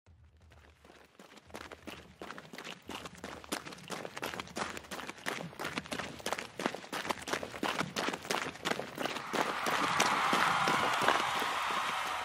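Running footsteps, about four or five quick steps a second, growing steadily louder as they approach from far off. Near the end a swell of noise rises under them.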